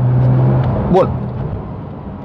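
Porsche 911 GT3 RS (991.2) 4.0-litre naturally aspirated flat-six heard from inside the cabin on the move. It holds a steady drone, which drops away about two-thirds of a second in and stays lower after that.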